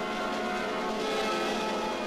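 Newsreel background music holding a sustained chord of several steady tones.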